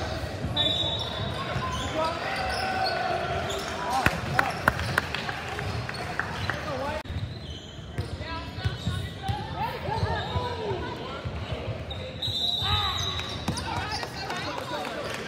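Basketball game in a large echoing gym: the ball bouncing on the hardwood court and players' voices, with a run of sharp bounces about four to five seconds in.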